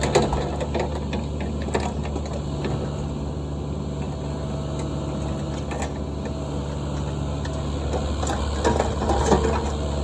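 Cat 305 E2 mini excavator's diesel engine running steadily as it grades, with scattered knocks and scrapes from the bucket working the dirt, a cluster of them near the end.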